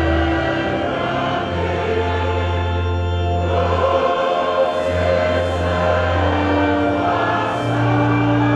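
Many voices singing a slow hymn together, over long held low notes.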